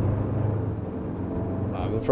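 Ambulance driving, its engine and road noise making a steady low drone. A voice starts near the end.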